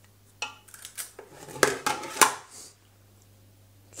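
Metal ice cream scoop clicking and clattering against a metal mixing pan: a run of sharp metallic clicks and knocks, starting about half a second in and stopping before three seconds.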